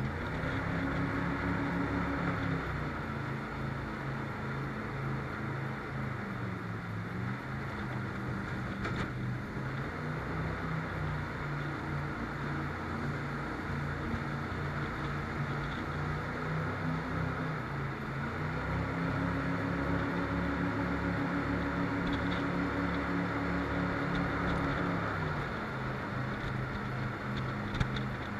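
Jet boat engine running at speed under a constant rush of water and wind. The engine note rises just after the start, eases a little a few seconds in, climbs again about two-thirds of the way through and drops back near the end as the throttle changes.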